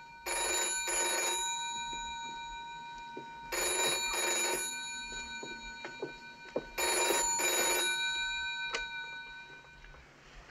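Telephone bell ringing in the British double-ring pattern: three pairs of short rings, about three seconds apart.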